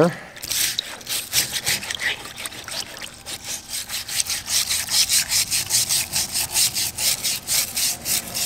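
Stiff nylon-bristle scrub brush scrubbing a rusty steel motorcycle rear strut submerged in Evapo-Rust in a plastic drain pan: quick back-and-forth strokes, about four a second, swishing the liquid. The rust, loosened by a day's soak, is being brushed off.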